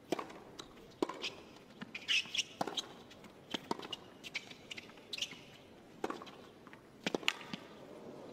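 Tennis rally on a hard court: sharp racket-on-ball strikes every second or two, starting with the serve, with players' shoes squeaking and scuffing on the court between shots.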